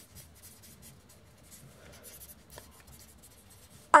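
Pen scratching on paper in many short strokes as words are handwritten.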